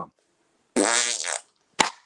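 A man blowing a short raspberry with his lips, lasting about half a second, followed by a single sharp click near the end.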